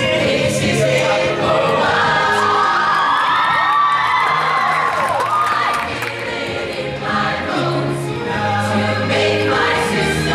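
Show choir singing over a pop accompaniment with a steady low bass line; for a few seconds in the middle, high voices slide and swoop.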